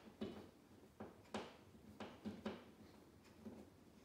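A screw being turned by hand into a plastic drywall anchor: a run of short, irregular clicks, about two a second, as the screwdriver grips and turns.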